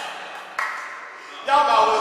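A man's voice preaching, which becomes much louder about a second and a half in.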